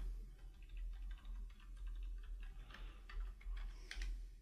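Faint computer keyboard typing: a run of quick, light keystrokes as a short file name is typed in.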